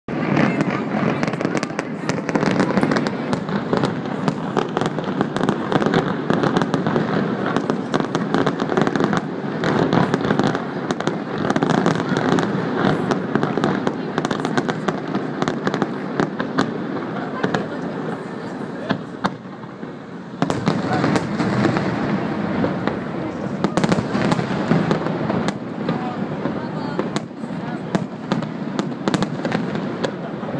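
Aerial fireworks display: a rapid, continuous run of shell bursts and crackles, easing off briefly about two-thirds of the way through, then resuming.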